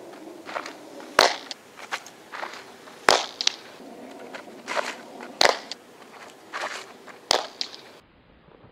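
A softball pitched into a catcher's leather mitt, with four sharp pops about two seconds apart. Shorter crunching scuffs in between fit cleats on the dirt infield.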